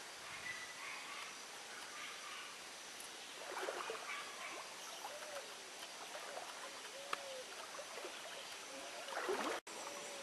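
Faint ambience of a forest river: a steady hiss of flowing water, with a few short, faint rising-and-falling calls in the second half.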